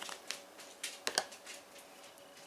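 Lid being taken off a frozen silicone ice cube tray: faint handling rustle with a few small clicks, the sharpest two a little after a second in.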